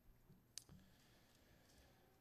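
Near silence: room tone, with one faint sharp click about half a second in and a weaker one just after.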